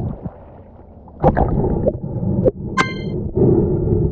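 Water splashing and gurgling around a mask-mounted camera at the surface, with a single short ringing clink near three seconds in, then the dull steady rumble of being back underwater.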